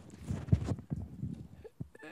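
A few faint, irregular low knocks and shuffling sounds, the strongest about half a second in.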